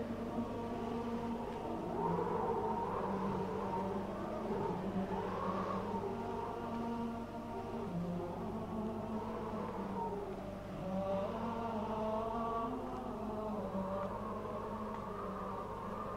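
A choir chanting a slow sacred chant in unison, the melody rising and falling over a steady low held note.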